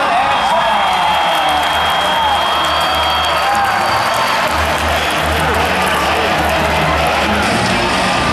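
Arena din: music over the PA with a pulsing beat, and a crowd cheering and shouting.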